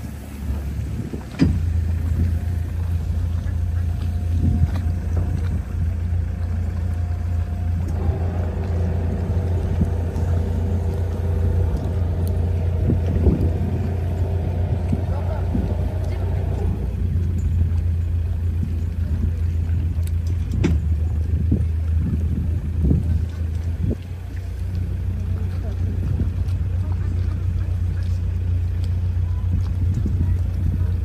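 A boat's motor running steadily with a low, even hum as it moves along the water. From about eight seconds in to about seventeen seconds a higher hum of several steady tones runs alongside it.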